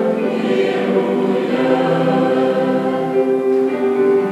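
Mixed church choir of men's and women's voices singing a sacred piece in a church, holding long chords that shift from one to the next.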